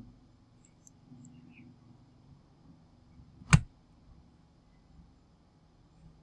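Faint room tone, broken about three and a half seconds in by a single loud, sharp click.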